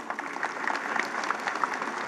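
Audience applauding: many hands clapping at once.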